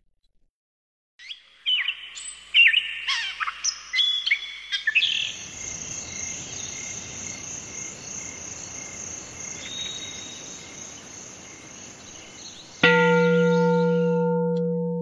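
Birds chirping in short gliding calls, giving way to a steady high hiss of outdoor nature ambience. Near the end a bell is struck once and rings on, slowly fading.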